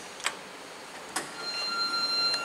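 Elevator hall call button clicking as it is pressed and released, then a clunk about a second in as the Otis traction elevator's doors begin to slide open with a steady high whine.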